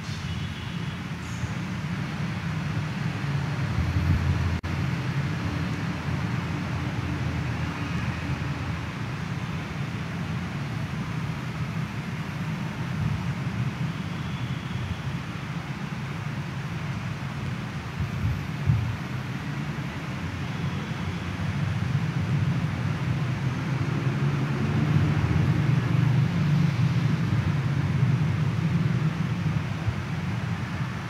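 Steady low rumble and hiss of background noise in a large church, with no speech or music. It grows somewhat louder in the last third.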